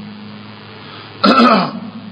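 A man briefly clears his throat once, a little over a second in, over a faint steady low hum.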